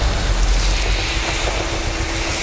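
Sound-design whoosh for an animated logo: a steady rushing noise over a low rumble.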